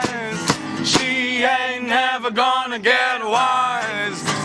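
Acoustic band performance of a song: a man singing over acoustic guitar and acoustic bass guitar, with a couple of short percussive hits about half a second and a second in.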